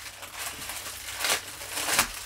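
Crinkling and rustling of a store-bought package of felt sheets being handled and opened, with louder crackling rasps about a second in and again near the end.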